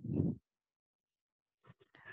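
A voice trails off in the first half-second, then the call audio drops to dead silence, cut off completely as a video call's noise gate does; a few faint clicks come just before the end.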